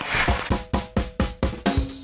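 A short whoosh, then a drum fill of about six quick hits, roughly four a second, leading into upbeat intro music.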